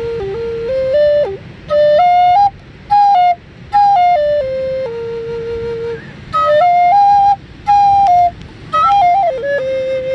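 Native American-style wooden flute playing a slow melody in short phrases with brief breaths between them, one note held longer about five seconds in.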